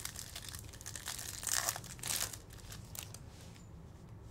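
Foil trading-card pack wrapper crinkling and tearing as it is opened, with cards rustling as they are pulled out; the loudest rips come about a second and a half and two seconds in.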